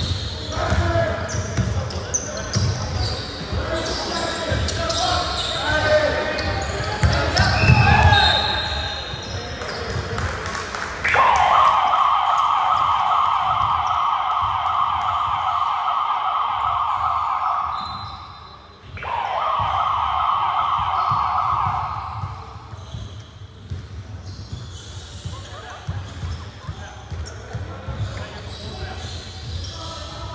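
A basketball bouncing on a hardwood gym floor, with players calling out. About eleven seconds in, a scoreboard buzzer starts suddenly with a long, steady blast of several seconds, then sounds a second, shorter blast.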